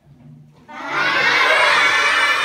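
A class of young children shouting and cheering together, a sudden loud burst of many voices that breaks out about two-thirds of a second in and holds.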